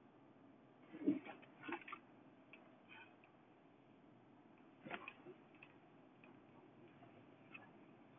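Near silence inside a car cabin, broken by a few faint clicks and knocks, the clearest about a second in and again near five seconds.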